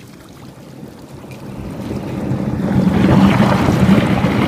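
Rushing, swirling water, growing steadily louder from about a second in until it is loud near the end.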